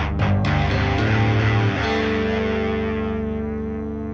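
The close of a heavy metal song on distorted electric guitar and bass: a few last hits, then a final chord a little under two seconds in that rings out and slowly fades.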